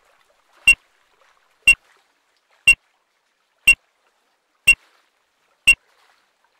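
Race start timer giving short, high electronic beeps once a second, six in all: the count-off between the spoken 30- and 20-second calls of a radio-sailing start sequence.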